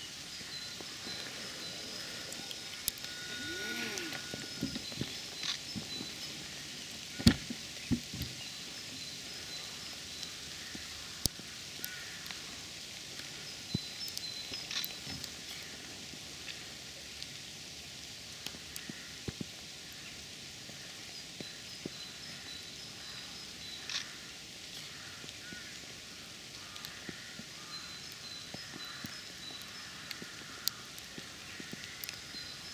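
Quiet outdoor ambience in light rain: a steady faint hiss with distant birds chirping now and then, and a few sharp clicks.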